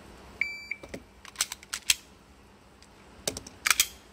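Shot timer giving its start beep for a table-start pistol drill, a short steady beep about half a second in. Then the clicks and clatter of the pistol being snatched up and readied, and a few sharp cracks near the end as it fires.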